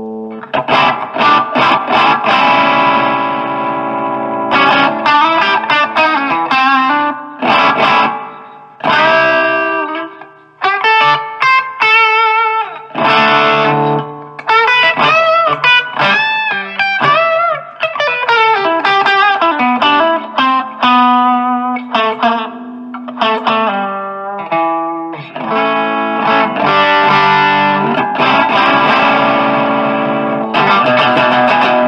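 Distorted electric guitar, a Stratocaster-style guitar played through an Orange Micro Terror amp head into a Marshall MG 4x12 cabinet with four Celestion-designed 12-inch speakers. Chords and riffs with short stops, and a stretch of single-note lead with bends and vibrato around the middle.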